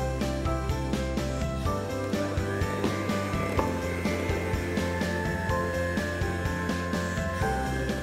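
Electric hand mixer running, its twin beaters working flour into a thick cake batter in a glass bowl, under steady background music.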